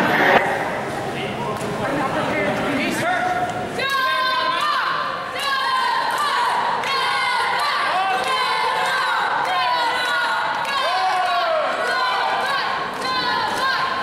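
Wrestling crowd talking and calling out over one another, many voices at once, with a few scattered thuds.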